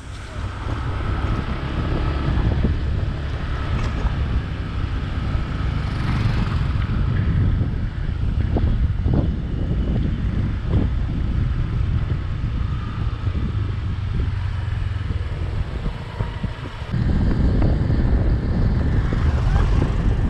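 Motorbike riding along a road: wind buffeting the microphone over the engine and road noise, getting louder near the end.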